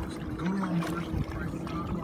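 Water sloshing against the side of a small boat, with a steady noise bed, and a brief low murmured hum from a person about half a second in.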